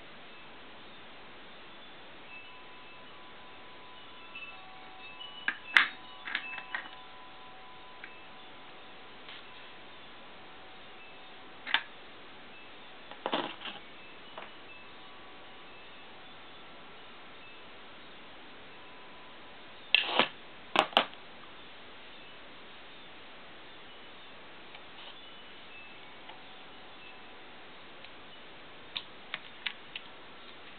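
Faint steady hiss broken by a handful of sharp clicks and knocks from glass lamps being handled, the loudest about six seconds in and a close pair about twenty seconds in. Faint thin high tones come and go in places.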